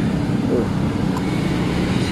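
Steady low running of a motorcycle engine at idle, the Yamaha RX-King's two-stroke single, with a faint click about a second in.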